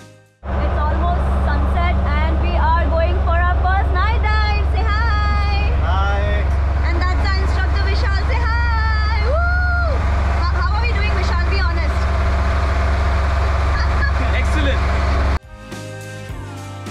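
A dive boat's engine running with a loud, steady low rumble, with people's voices talking and calling over it. It starts suddenly about half a second in and cuts off shortly before the end.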